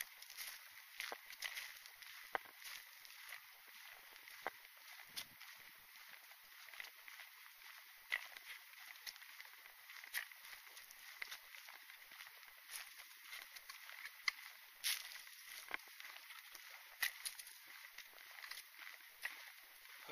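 Footsteps on a dirt woodland trail strewn with dry dead leaves, irregular faint crackles of leaves and twigs under each step over a steady hiss.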